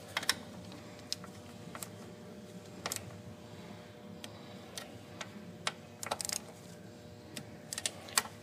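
Light, irregular metal clicks from a torque wrench and socket on the throttle body's mounting bolts as they are torqued down, over a faint steady hum.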